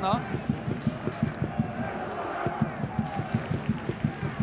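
Football stadium crowd cheering a home goal, over a run of irregular low thumps, several a second.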